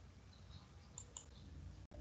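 Near silence: faint low hum with two faint short clicks about a second in, and a brief dropout of the audio just before the end.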